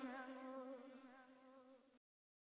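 The last held note of a sped-up a cappella vocal, a steady tone with a slight waver, drenched in big-hall reverb, fading away and cutting off into silence at the end.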